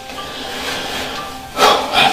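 Soft background music with faint held notes, then a short, louder sound about one and a half seconds in.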